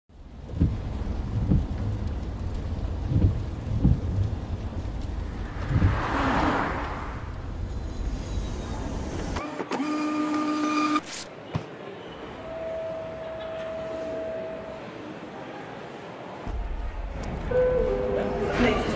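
Low rumble with soft thumps and a swelling whoosh, under music. About nine seconds in, a baggage-tag printer whines briefly as the label feeds out, then cuts off sharply, followed by a single steady held tone.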